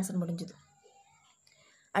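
A woman's voice explaining a sum trails off in the first half-second. Then it is nearly silent, with a faint high-pitched whine, until speech starts again right at the end.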